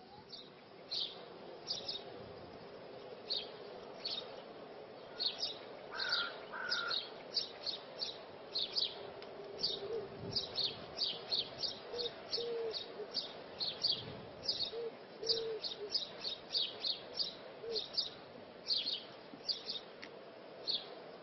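Small birds chirping, with many short high chirps coming in quick runs throughout, over a steady low hum.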